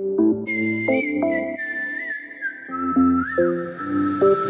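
Electronic dance track intro: short sustained chord notes change every half second or so. From about half a second in, a high, pure single-note melody enters, stepping downward in pitch with small slides between notes.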